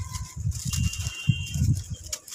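Hands squeezing and crumbling a dry, gritty lump of red sand in a bucket: a run of dull crunches with fine gritty crackle as it breaks apart.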